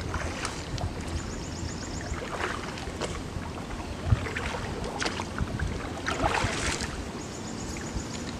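A paddle dipping into river water in a few soft, irregular splashes, over steady outdoor ambience with wind on the microphone.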